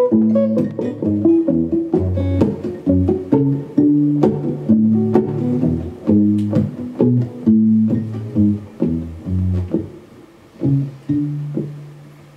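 Two guitars playing the instrumental close of a song: a plucked melody over low bass notes. The playing thins out and settles on one held low note near the end.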